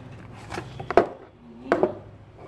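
Watch packaging being handled: a cardboard sleeve slid off a hard tin watch box, with a few knocks, the loudest a sharp knock about a second in as the tin is set down on a wooden desk.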